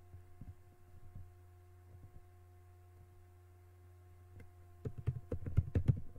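Computer keyboard keys tapped in a quick run of clicks near the end, over a steady low hum.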